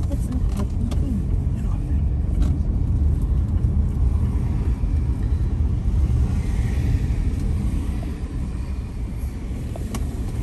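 Car driving slowly through town streets: a steady low rumble of engine and tyres on the road.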